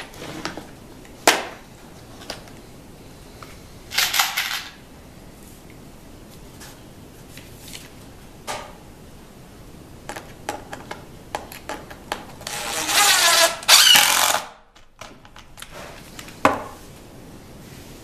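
A DeWalt cordless impact driver runs in one loud burst of about two seconds near the end, driving a screw into a plywood crosscut sled. Before it there are scattered clicks and a short rattle of screws being handled in a plastic box.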